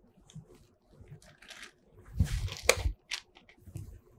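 Gloved hands handling plastic lyse reagent bottles and their zip-lock packaging: faint scattered clicks, then a short stretch of crinkly handling noise with sharp clicks and a low knock about two to three seconds in, and a few more clicks near the end.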